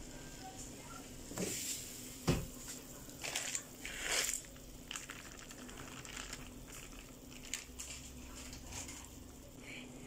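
Plastic instant-noodle packet rustling and crinkling in short bursts as it is handled over a saucepan, with a single dull thump about two seconds in, over a faint steady hum.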